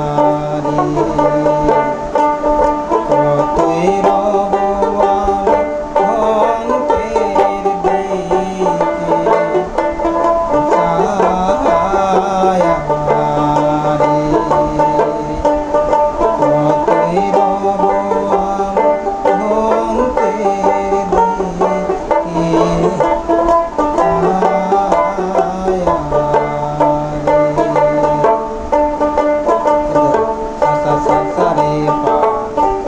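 Dotara, a skin-covered plucked folk lute, played continuously: a run of plucked melody notes over a lower line that shifts between a few pitches.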